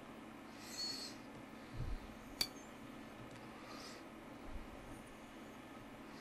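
Faint handling sounds of fly tying, with a twisted thread being wound onto a hook held in a vise: soft hisses, a low bump, and a single sharp click about two and a half seconds in.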